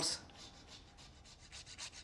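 Whole nutmeg being grated on a fine microplane grater over a pan: faint scraping strokes, more distinct near the end.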